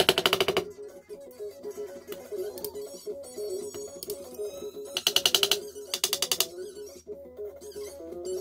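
Three quick runs of rapid light hammer taps from a soft-faced hammer seating fret wire into the slots of a guitar fretboard: one right at the start, and two more about five and six seconds in. Background music plays throughout.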